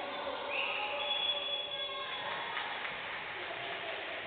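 Players' voices calling out and echoing around a mostly empty basketball hall during a dead ball, with a single high squeal lasting over a second starting about half a second in.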